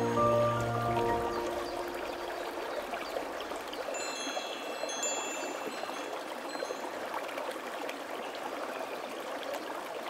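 Water trickling and running steadily like a small stream, with a few high chime tones ringing out about four to five seconds in. A gentle melody with low bass notes fades out about a second in.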